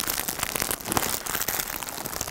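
Plastic packaging around yarn cakes crinkling and crackling as the packs are handled and stacked, a dense run of small irregular clicks.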